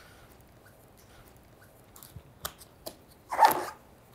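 Cardboard box lid being lifted open by hand: a few light clicks and taps in the second half, then a short rustle of cardboard.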